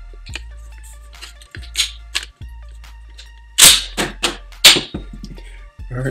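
Mossberg 500 pump-action shotgun being unloaded: a few light clicks as the action release is pressed, then a cluster of four sharp metallic clacks about three and a half seconds in as the pump is worked to eject the mini shells. Quiet background music plays underneath.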